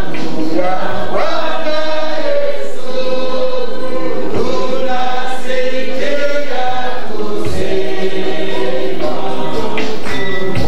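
A congregation singing a hymn together, many voices holding long notes that change every second or so.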